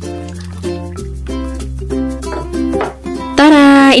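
Light background music: short plucked-string notes over a held low bass line. A woman's voice cuts in near the end.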